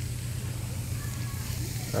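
Steady hissing outdoor background noise with a low, even hum beneath it.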